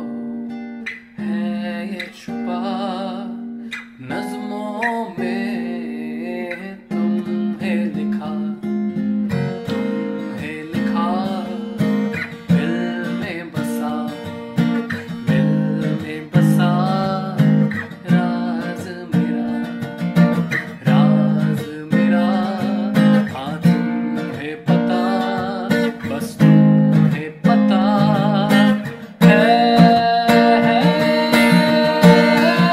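A man singing a Hindi love song over his own strummed acoustic guitar. The strumming grows louder and more regular from about seven seconds in.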